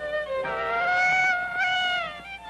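Toy doll's crying voice: one long high wail that wobbles briefly near the end and slides down as it stops, over the cartoon's orchestral score.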